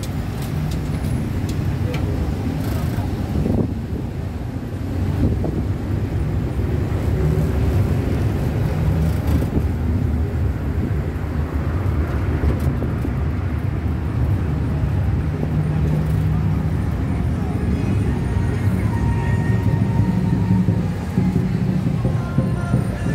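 Engine and road noise from riding in the open back of a pickup taxi through city traffic: a steady low rumble, with the engine's hum drifting slightly up and down in pitch as it drives.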